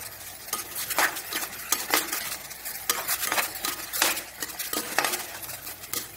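A ladle scraping and knocking against an aluminium pressure-cooker pan while mixed vegetables are stirred, about one stroke a second, over a steady sizzle of frying.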